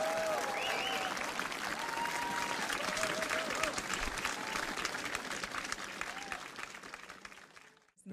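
Audience applauding, with a few voices cheering over the clapping; the applause fades away over the last couple of seconds.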